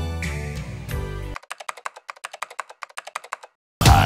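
Rapid typing on a laptop keyboard, a quick, even run of keystrokes lasting about two seconds, after soft music cuts off. Near the end, loud upbeat dance music with a heavy beat starts.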